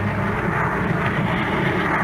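Steady drone of airliner engines, a radio-drama sound effect setting an in-flight scene.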